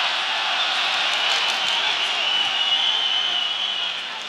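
Arena crowd noise from a large boxing audience: a steady hum of many voices at once.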